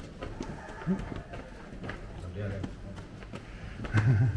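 Background voices of people talking in a stone stairwell and arcade, with faint footsteps on the stone steps.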